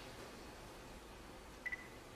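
Quiet room tone, with a short, high-pitched double beep near the end.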